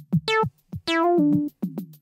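A drum-machine loop ticks along about four hits a second while an acid synth melody sample is auditioned over it. The synth plays a short note, then a longer note about a second in whose bright edge quickly closes down. It stops before the end, leaving the drums.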